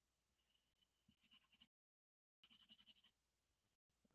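Near silence: very faint room sound with soft, high flickers, cutting out completely for a moment near the middle.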